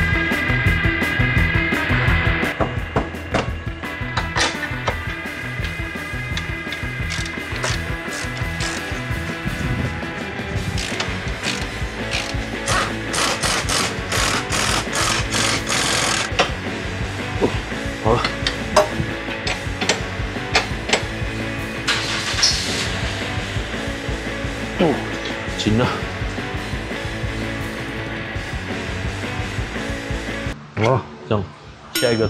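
Rock background music with a steady beat. Over it, an impact wrench hammers in bursts on the new lower control arm's bolts, the longest burst near the middle and a shorter one later.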